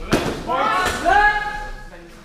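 Two sharp hits as the fencers' weapons strike in a HEMA exchange, the first just after the start and the second a little before the middle. Alongside them comes a loud shout that rises at first and is then held for over a second.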